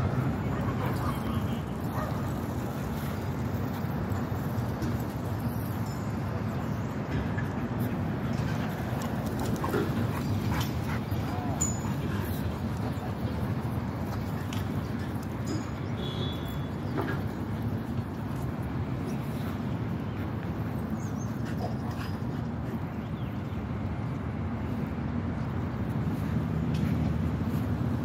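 Steady low background rumble of outdoor ambience, with faint scattered clicks and a few brief high chirps.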